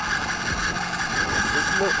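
Small RC servo running steadily, a constant electric whine with fainter higher tones: the receiver has lost the transmitter signal and failsafe is driving the servo. Wind rumbles on the microphone underneath.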